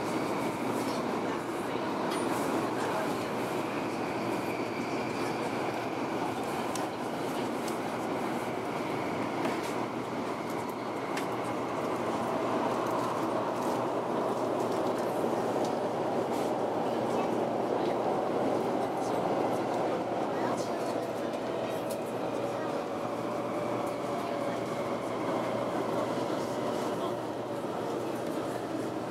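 Cabin noise of a Taiwan High Speed Rail 700T train running at speed: a steady rumble and hiss from the running gear and air, with a faint whine that falls slowly in pitch in the second half.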